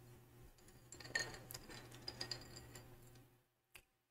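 Faint clinks of drinking glasses: a few small taps with a brief high ring between about one and two and a half seconds in, and one sharp click near the end, over a low steady room hum.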